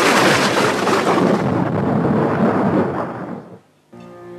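A thunderclap sound effect on a film soundtrack: a sudden loud crash that rolls on for about three seconds, then fades and stops.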